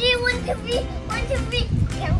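Young children's high-pitched voices calling out in excited play, three or four short cries that rise and fall, over a steady low rumble.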